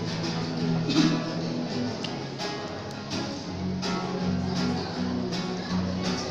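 Instrumental passage of the song, with no singing: strummed acoustic guitar chords, one strong strum roughly every second and a half over sustained chords.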